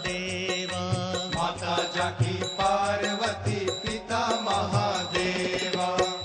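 Hindu devotional aarti music for Ganesh playing, a wavering melody over a steady beat.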